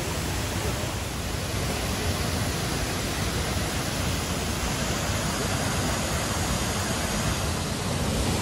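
Steady rushing of water pouring down a large cascade fountain, with a low rumble underneath.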